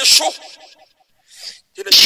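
A man's voice in fervent, shouted prayer. A phrase ends at the start with a sharp breathy burst, there is a short breath about a second and a half in, and a loud exclamation begins near the end.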